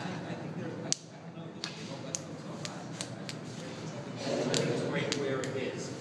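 A man laughing and voicing close to a phone microphone, louder in the last two seconds, over steady background noise, with a scatter of sharp clicks.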